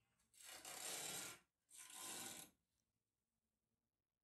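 Two bursts of rubbing or scraping noise close to the microphone, each about a second long, the second a little shorter.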